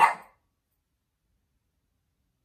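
A single short, sharp dog bark, over in about a third of a second.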